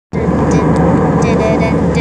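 Steady cabin noise of an airliner in flight, the engines and airflow running evenly, with a voice speaking over it.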